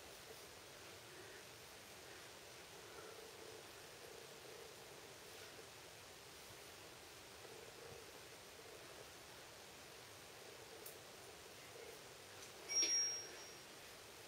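Very quiet, faint rustle of hair being backcombed with a plastic comb and fluffed by hand, barely above room hiss. A brief louder sound comes near the end.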